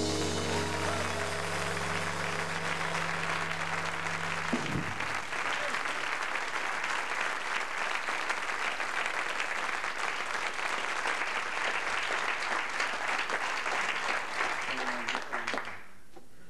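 Studio audience applauding at the close of a sung cabaret number. The band's final chord is held under the clapping for about the first four and a half seconds, then stops. The applause carries on until it falls away just before the end.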